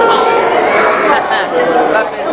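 Speech: people talking close by, with other voices chattering in the room.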